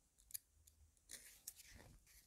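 Near silence, with one faint click about a third of a second in and a faint soft rustle in the second half.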